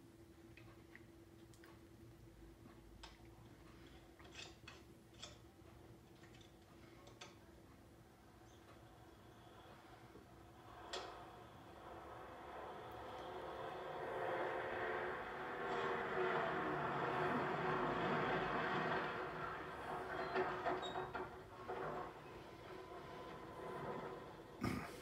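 A motor vehicle's engine approaching along a road: faint at first, growing steadily louder from about halfway, loudest in the last third, then easing off slightly near the end. Before it, only a faint steady hum and scattered clicks of an old film soundtrack.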